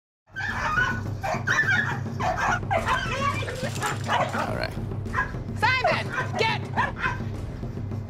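Dogs barking aggressively at each other through a chain-link fence, the larger dog lunging, with a run of high yelps about two-thirds of the way in.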